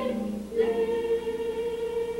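Sung music: a brief lower note, then one long high note held from about half a second in.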